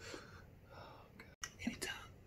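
Faint whispering voice, broken by an abrupt cut to silence a little past halfway, then a few short clicks.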